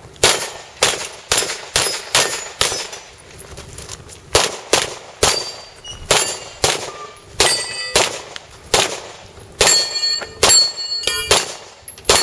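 Handgun fired in fast strings of shots, with a short pause about three seconds in. In the second half several hits set steel targets ringing with a clear metallic tone.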